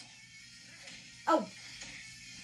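A single short, sharp yelp that falls steeply in pitch, about a second in, over faint background music.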